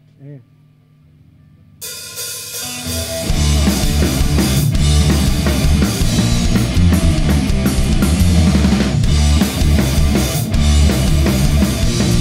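A punk rock band playing live: after a short quiet moment, guitars come in suddenly about two seconds in, and the full band with drums, cymbals and distorted guitars is playing from about three seconds in.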